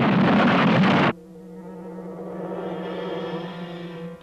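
Cartoon transition sound effect: a loud hissing whoosh for about a second that cuts off suddenly, followed by a low held chord of background music.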